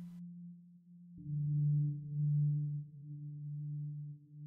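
A low, steady drone of a few held tones, likely from the film's score, which enters about a second in and swells and eases in level.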